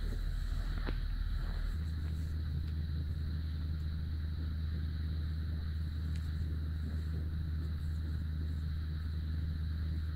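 A steady low background hum with a faint high-pitched whine above it, and no distinct handling sounds.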